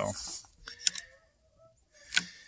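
The tail of a man's spoken word, then a few light, sharp clicks close together about a second in, followed by near quiet.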